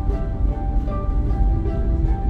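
Background music with held notes at several pitches, over a steady low rumble from the car driving.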